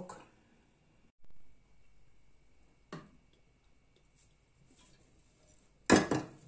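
Kitchen handling sounds at the stove: low room tone with a faint click about three seconds in, then a single sharp knock near the end.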